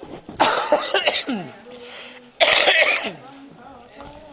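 A man coughing twice close to a handheld microphone: a rough cough about half a second in, then a louder, sharper one past the middle.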